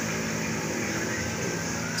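A steady low mechanical hum of a running motor, even throughout, with a few level low tones.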